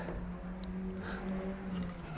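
A steady low hum runs throughout, with a faint scratch or two from a marker pen drawn along a wooden straightedge across the slats.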